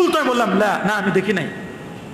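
Only speech: a man preaching in Bengali, with a brief lull in his voice near the end.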